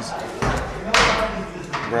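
A sharp knock about a second in, with a smaller one before it, as a skateboard deck is pulled from a stack and knocks against the boards and rack.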